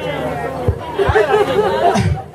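People's voices talking and chattering, with no music.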